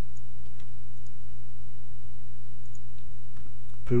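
A few faint computer mouse clicks, scattered and irregular, over a steady low hum.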